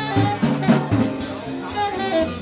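Live small-group jazz: a saxophone playing a melodic line over double bass and drum kit, with ride cymbal strokes repeating steadily.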